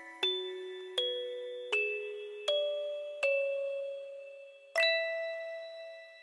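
Music box playing a slow, gentle melody: single plucked notes about every three-quarters of a second, each ringing on and fading away, with a pause and then a louder note near the end.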